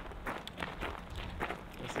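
Footsteps of two people walking on a gravel dirt trail, a steady run of short steps.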